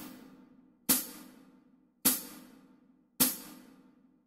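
Metronome-style percussion clicks, hi-hat-like, keeping a steady beat at 52 a minute through a bar where the cello rests. Three sharp ticks come about a second apart, each fading quickly.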